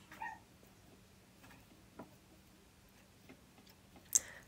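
Near silence: room tone with a faint steady hum, a short faint high-pitched sound about a quarter second in, and a couple of soft clicks.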